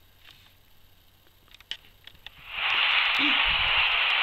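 A few faint clicks, then about two and a half seconds in a loud, steady hiss like radio static fades up and holds.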